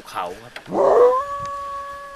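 A long howl: a loud rough start about three-quarters of a second in, then one pitch held steady.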